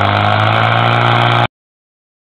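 Portable fire pump engine running steadily at high revs, pumping water out through two hoses. The sound cuts off suddenly about one and a half seconds in.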